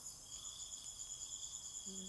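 Insects trilling steadily in several high-pitched, rapidly pulsing tones; the lowest of them drops out for a moment at the start.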